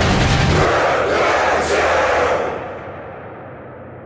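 Loud, dense rushing noise of an anime battle soundtrack's effects. It fades away about two and a half seconds in, leaving a faint low hum.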